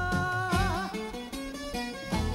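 A woman singing a Greek song holds a long note that wavers with vibrato and ends under a second in, then a plucked-string instrumental accompaniment with a bass line carries on without the voice.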